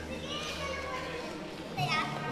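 Background hubbub of children playing and voices chattering at a busy gathering, with a loud rising shout near the end.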